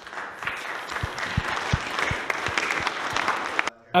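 A room full of people applauding, many hands clapping at once, cutting off suddenly near the end.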